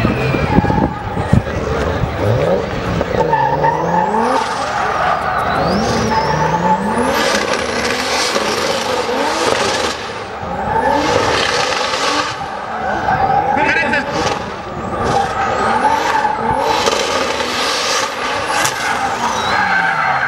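BMW E36 drift car's engine revving up and dropping back again and again through a drift run, with its tyres skidding and squealing in long stretches.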